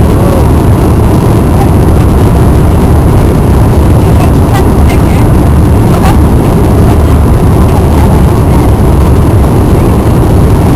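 Steady loud roar of an Airbus A340-300's four jet engines and airflow heard inside the passenger cabin as the airliner rolls on the ground, with a few light knocks and rattles.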